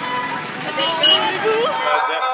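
Busy street sound: a voice speaking briefly over traffic and crowd noise, with a steady musical tone trailing off early on.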